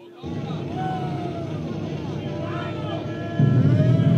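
Live rock band starting a song: a noisy low drone comes in about a quarter second in, with wavering high glides above it. About three and a half seconds in, the full band comes in much louder.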